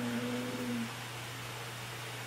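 A woman's short hummed 'mmm', held on one pitch for about a second, then quiet room tone with a steady low hum.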